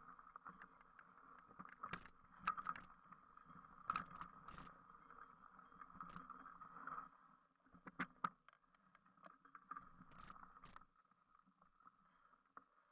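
Faint rattles and sharp knocks of a mountain bike jolting over a rough, muddy trail, under a steady low hum.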